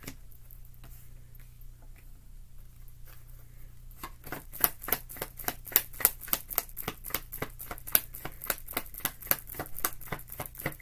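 Deck of tarot cards being shuffled by hand. After a few quiet seconds there is a quick, even run of crisp card slaps and flicks, about five a second, starting about four seconds in.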